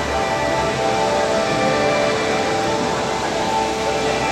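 Ambient installation music: soft, sustained tones that shift slowly, over a steady background hiss of the room.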